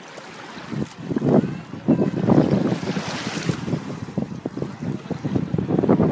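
Wind buffeting the microphone in loud, irregular gusts from about a second in, over small waves washing in at the water's edge.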